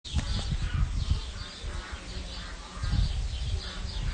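Birds chirping over and over in short, high calls, with low rumbling thumps on the phone's microphone.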